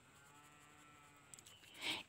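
A faint, drawn-out pitched call lasting about a second, in the background of a quiet room.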